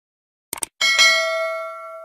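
Subscribe-animation sound effects: a quick double mouse click, then a bell ding that rings out about a second in and slowly fades.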